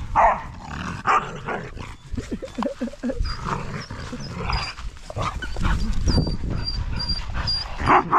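Pit bull puppies whining and yelping, a string of short high yelps with wavering whines among them, a little past two seconds in; it is the whine the owner takes for puppies begging older dogs for food.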